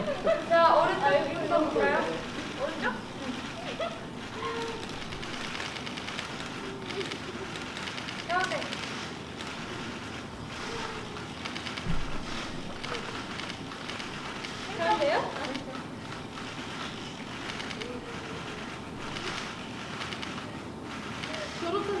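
Crowd murmur of many voices in a large hall, with a few voices briefly standing out and a short low thump about twelve seconds in.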